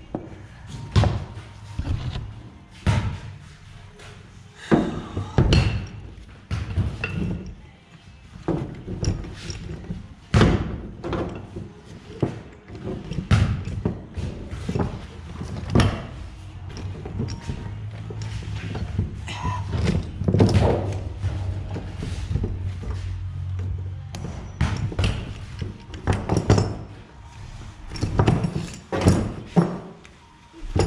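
Irregular knocks and thunks of steel roller chain and tools being handled as new apron chain links are fitted onto a New Holland 795 manure spreader. The links are pinched tight and hard to get on.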